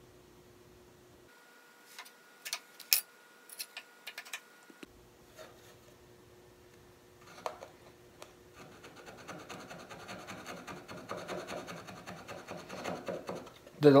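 Light, sharp metal clicks and taps as a saw plate with its metal back is set into the kerf of a wooden saw handle. From about eight seconds in comes a run of quick scraping strokes, growing louder: a thin file working in the handle's slot.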